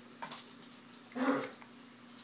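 Nanday conure giving one short, low vocal call about a second in, with a few faint clicks just before it.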